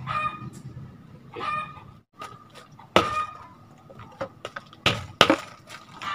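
A chicken clucking in short calls about every second and a half. In the second half, sharp knocks of a hammer breaking clay brick into pieces.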